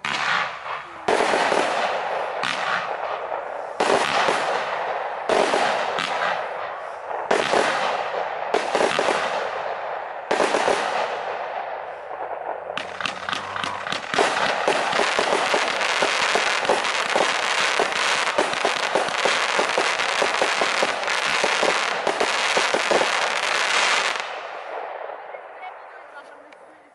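Lesli 'Karneval' 75-shot, 20 mm compound firework cake firing. For the first twelve seconds it fires single shots, each trailing off after its sharp start. Then comes a dense, rapid run of shots lasting about eleven seconds, which dies away near the end.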